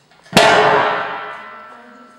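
A rusty steel I-beam dropped onto a concrete floor: one loud clang about a third of a second in, ringing with several tones and dying away over about a second and a half.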